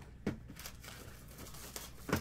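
A cardboard card box being lifted off a stack of boxes by hand: one knock about a quarter second in, then light scraping and rustling of the wrapped boxes.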